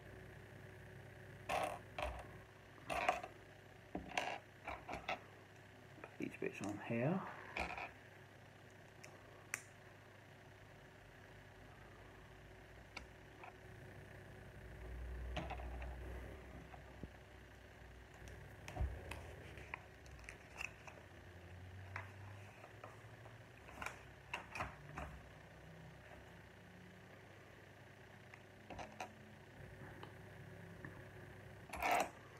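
Plastic Lego bricks being handled and pressed together: scattered faint clicks and taps, busiest in the first several seconds and again from about twenty to twenty-five seconds in.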